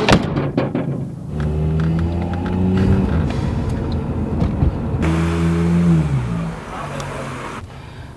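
A sharp thump, then a car's engine pulling away and revving up and down twice, with road noise heard from inside the cabin.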